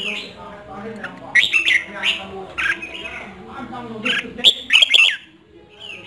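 Red-whiskered bulbul kept as a decoy bird calling from its trap cage in several short bursts of quick, sweeping notes, the loudest between about four and five seconds in.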